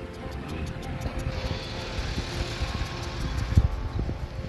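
Water hissing from impact sprinklers spraying over a lawn, under background music with held notes. A fast regular ticking fades out about a second in, a low rumble runs underneath, and there is a single thump near the end.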